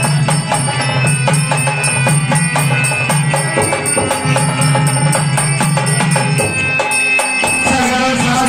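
Instrumental passage of live folk devotional music: a harmonium plays a melody over a held low note while a double-headed barrel drum keeps up steady hand strokes. The low harmonium note drops out about six and a half seconds in.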